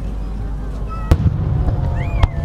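Aerial firework shell bursting: one sharp boom about halfway through, followed by a low rolling rumble.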